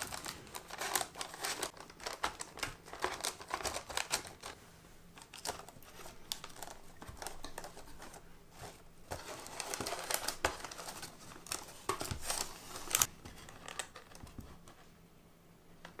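Buttered biscuit crumbs being pressed down into a paper-lined carton, first with the bottom of a glass, then with a spoon. The sound is a dense crackly crunching and crinkling of crumbs and baking paper, busy in the first few seconds and again in the middle, easing off near the end.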